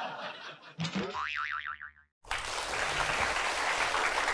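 Comic 'boing' sound effect added in the edit: it starts suddenly about a second in and its pitch rises, then wobbles up and down rapidly for about a second. After a brief silence, a steady rush of noise follows.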